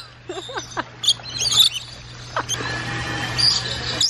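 Rainbow lorikeets chirping in short, high calls close by, with a steady low hum underneath.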